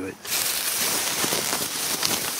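A white plastic garbage bag being ripped open by hand. Thin plastic crinkles and rustles in a continuous crackle that starts about a quarter second in.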